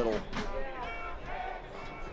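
Male sports commentator's voice over the steady background noise of a stadium broadcast, with some music in the mix.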